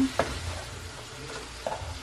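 Diced chicken and shrimp sizzling steadily in butter in a nonstick frying pan. A wooden spoon stirs them, with a few faint taps against the pan.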